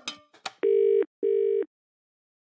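A few short clicks, then one double burst of British telephone ringing tone heard down the line: two steady 'brr-brr' pulses about 0.4 s long with a short gap between them, meaning the number is ringing at the other end.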